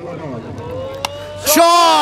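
A single sharp crack, a bat striking a tape ball, about a second in, over a faint rising hum. It is followed by a loud, drawn-out shout.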